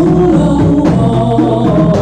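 A rebana frame-drum ensemble playing with hands in a steady rhythm, with a man singing lead into a microphone over the drums.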